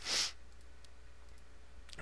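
A short, sharp breath right at the start, then a few faint clicks of a computer mouse.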